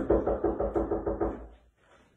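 Rapid knocking on wood: a quick run of about nine knocks over a second and a half, then it stops.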